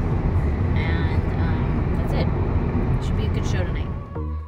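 Car cabin noise while driving: a steady low road and engine rumble, with brief bits of voice over it.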